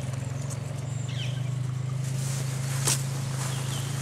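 Outdoor ambience: a steady low hum, a few faint bird chirps and a single sharp tap about three seconds in.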